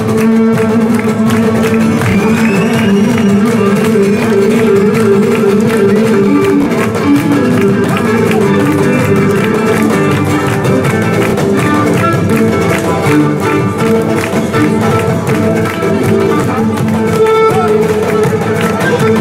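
Cretan folk dance music played steadily throughout: a bowed lyra carrying the melody over a plucked, strummed laouto keeping the rhythm.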